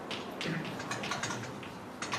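Writing on a board: a quick, uneven run of small taps and scratches, several a second.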